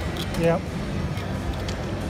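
Casino floor background noise, a steady hum and din around the slot machines, with one short spoken "yeah" about half a second in.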